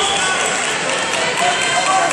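Indistinct voices and chatter from people around a wrestling mat, echoing in a large sports hall.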